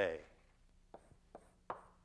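Chalk knocking on a blackboard while writing: three sharp taps about a second in, a little under half a second apart.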